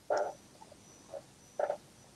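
A few short animal calls over a quiet background: two louder ones about a second and a half apart, with fainter ones between.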